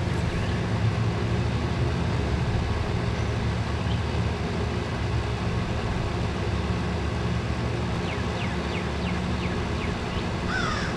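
A steady low engine hum runs without change, with a few faint bird chirps now and then.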